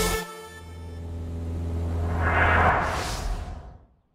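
Background music cuts off, then an editing transition effect plays: a low steady hum for about two and a half seconds under a whoosh that swells, rises in pitch and fades out near the end.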